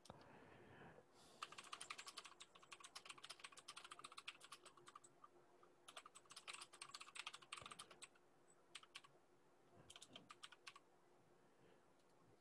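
Faint computer keyboard typing: a run of rapid keystrokes of about four seconds starting just over a second in, another of about two seconds starting about six seconds in, and a short burst about ten seconds in.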